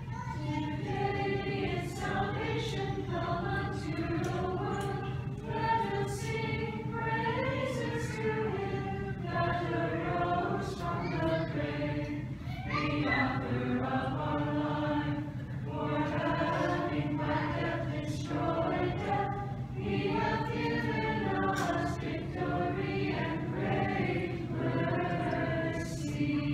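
Church choir singing Orthodox liturgical chant a cappella, several voices in harmony, in sung phrases with short breaks between them.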